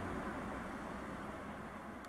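Steady rushing background noise with no bell strikes, getting gradually quieter.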